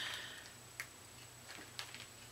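Two faint ticks about a second apart over a low steady room hum.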